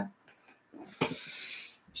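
A short, soft breath drawn in about a second in, ending just before speech resumes, after a brief silent pause.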